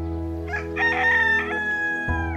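A rooster crowing once: a long, drawn-out call that begins about half a second in and dips slightly in pitch as it ends, over a steady held chord of background music.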